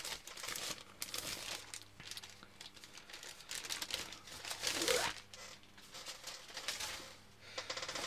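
Frosted plastic packaging bag crinkling and rustling as it is handled and opened to get the pencil case out, in irregular bursts, loudest about five seconds in.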